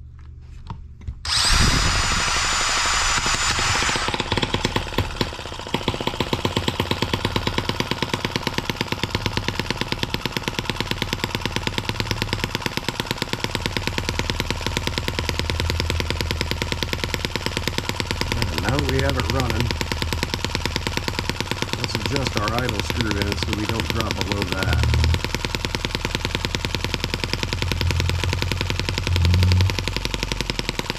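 A cordless drill driver spins over a brass M17B single-cylinder model engine fitted with an oversized Traxxas nitro carburetor. The engine catches and runs on its own with a rapid, even string of firing beats. It is running a little rough, and needs its low-speed mixture tuned to smooth it out.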